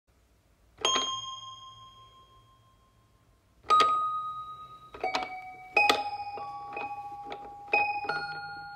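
Bell-like chime tones struck one at a time, each ringing and slowly dying away. The first two are about three seconds apart, then from about five seconds in they come more quickly at different pitches.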